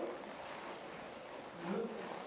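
A faint high insect chirp repeating about twice a second over a steady hiss, with a brief low pitched sound near the end.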